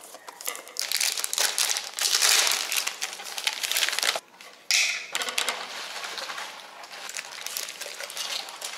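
Plastic packaging crinkling and rustling as it is handled, with a brief lull a little after halfway that ends in a sharp, loud rustle.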